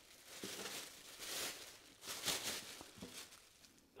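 Thin single-use plastic bag rustling and crinkling as hands pull it open and handle it. The sound comes in soft, uneven bursts and fades away near the end.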